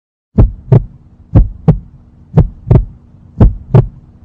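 Heartbeat sound effect: four lub-dub pairs of low thumps, one pair a second, starting about a third of a second in, over a faint steady hum.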